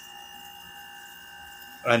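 A short pause in a man's speech, filled by a faint steady background hum with a few thin high tones; his voice comes back near the end.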